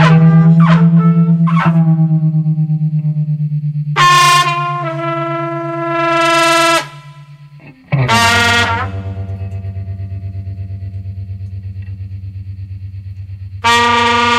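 Improvised experimental music: a distorted electric guitar through effects holds a loud low droning note that pulses with tremolo, while bright, ringing notes are struck over it about four seconds in, again about eight seconds in after a short dip, and once more near the end.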